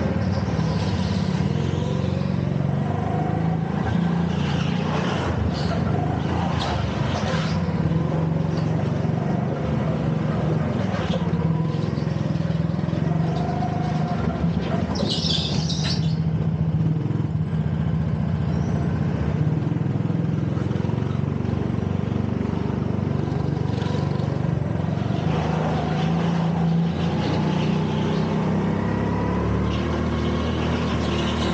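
Go-kart engine heard from onboard while lapping, its pitch rising and falling as the throttle opens and closes through the corners. A brief high-pitched noise stands out about halfway through.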